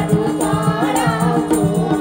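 Nepali devotional bhajan performed live: a group of women singing together in unison over a steady harmonium drone, with two madal hand drums playing a steady rhythm.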